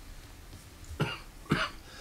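A person coughing twice, two short coughs about half a second apart, the first about a second in.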